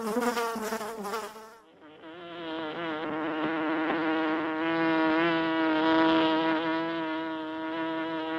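Honey bees buzzing en masse: a dense, steady droning hum with a clear pitch. About two seconds in, the sound changes to a duller, slightly higher hum, which swells in the middle and eases toward the end.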